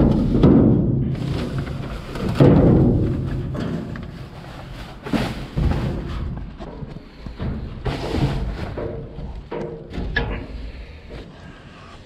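Hollow thuds and knocks of objects being shifted about inside a metal dumpster, the loudest near the start and about two and a half seconds in, with smaller knocks and rustling after.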